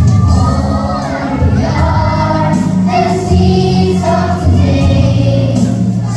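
A group of young children singing a song together over accompanying music.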